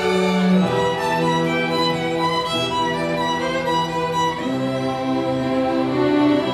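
A student string ensemble of violins, cellos and basses playing music of held notes and chords, the low parts moving to new notes every second or so.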